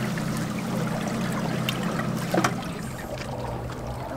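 Seawater washing and trickling among jetty rocks, over a steady low hum, with a couple of sharp clicks near the middle.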